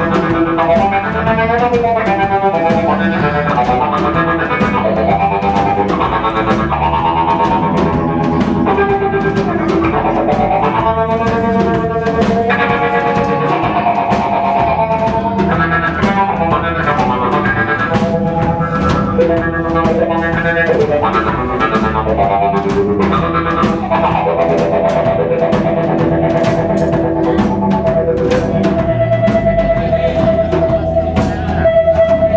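Live blues band playing: electric guitar, bass guitar and drum kit, with cymbal strikes all the way through.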